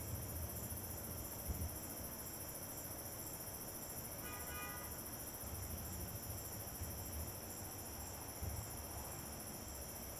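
Steady chorus of crickets on a summer night, a continuous high-pitched trilling. A few faint low thumps come and go, and a brief faint tone sounds about four seconds in.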